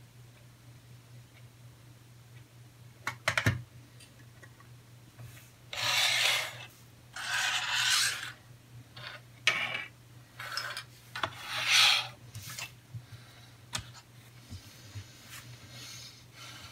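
Hard plastic model-kit parts clicking and being set down on a desk, then several rubbing, rustling strokes of the paper instruction sheet being unfolded and slid across the desk, each about half a second to a second long. A faint steady low hum runs underneath.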